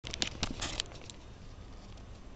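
Handling noise from a camera being picked up and moved: a quick flurry of small clicks and scratches in the first second, then only faint hiss.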